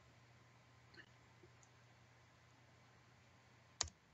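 Near silence, then a single sharp click near the end as the presentation slide is advanced.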